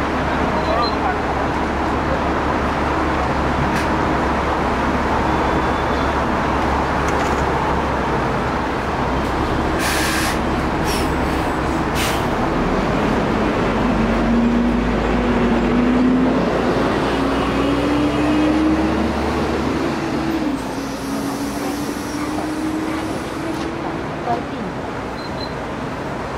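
City bus engine idling at a stop, a short hiss of compressed air about ten seconds in, then the engine note rising as the bus pulls away, dropping once near the end at a gear change and climbing again.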